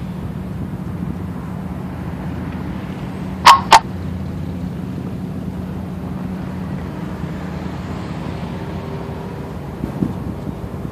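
Diesel freight locomotives approaching in the distance: a steady low engine drone. About three and a half seconds in come two short, loud, sharp sounds about a quarter of a second apart.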